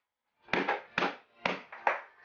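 A hammer tapping the toe of a handmade cloth shoe: a run of short, sharp taps at about two a second, starting about half a second in.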